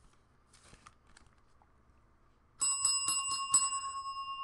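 A small metal bell struck in a quick run of about five strokes, its ring holding on after the last one, rung to mark a big hit. Faint handling ticks come before it.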